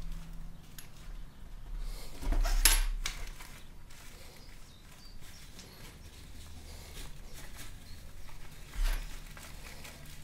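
Handling noise from a soft fabric carrying case and a cloth drawstring pouch being opened: fabric rustling and small knocks, with a louder rustle and bump about two and a half seconds in and a shorter one near the end.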